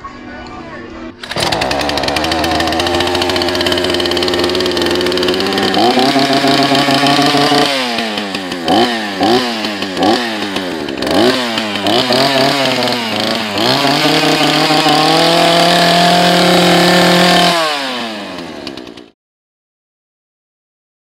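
Craftsman two-stroke gas chainsaw running, revved up and down in a series of quick blips through the middle, then held at high revs before it winds down and cuts off near the end.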